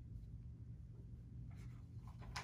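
Quiet room tone with a steady low hum, and a faint rustle of paper being handled at a lectern near the end.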